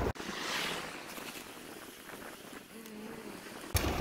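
Wind buffeting the microphone of a moving cyclist's camera, cutting out abruptly just after the start to a faint steady hiss of air, then returning abruptly near the end.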